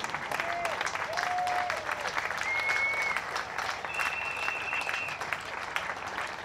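Audience applauding steadily, many hands clapping at once, with a few short high-pitched calls over the clapping.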